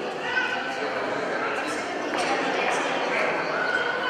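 Indistinct voices of people talking in a hall, a steady mix of speech with no single clear speaker.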